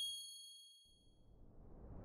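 Logo-sting sound effect: a high, bell-like ding rings out and fades away over the first second or so, then a whoosh swells in as the logo breaks apart.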